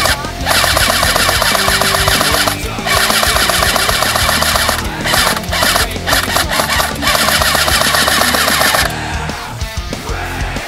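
Airsoft SAW (M249 replica) firing long full-auto bursts with short pauses, the bursts ending about a second before the end, over loud background music.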